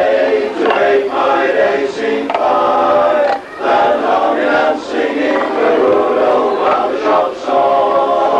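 A choir singing, its phrases broken by short pauses three or four times.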